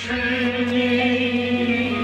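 Male vocalist singing a Kashmiri Sufiyana song, holding one long steady note, over a steady low hum.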